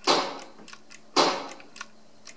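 Two shots from a home-built shooting-gallery light gun, about a second apart. Each is a sharp crack that dies away over about half a second, with faint clicks in between.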